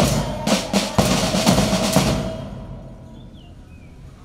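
School band's snare and bass drums playing closing strokes, about two beats a second, then the sound dies away about two and a half seconds in.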